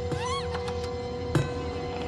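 Suspenseful horror-film score: a steady droning chord with a short high squeal that rises and falls near the start, and one sharp hit about a second and a half in.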